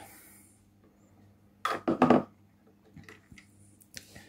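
A few faint, light clicks and taps of a plastic speedometer assembly being handled and turned in the hand, in the second half, with a short murmured sound just under two seconds in.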